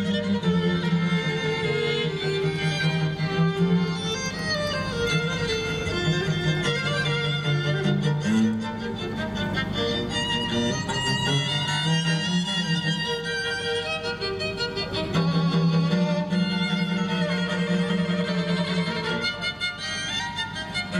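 String quartet of violins and cello playing a piece live, the upper strings carrying sustained bowed melody over steady low cello notes.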